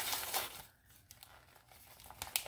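Paper sleeve around a potted African violet crinkling and rustling as it is handled and eased off, loudest in the first half-second, then a few faint rustles.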